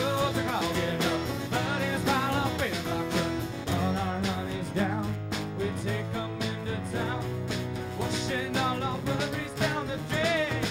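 Country-rock band playing an instrumental passage between sung verses: guitars over bass and drums, with a wavering melodic line on top.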